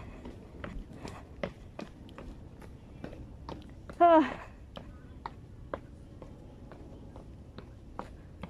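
Footsteps going down stone steps, about two to three treads a second, each a sharp tap. A short vocal 'oh'-like sound from a person comes about four seconds in.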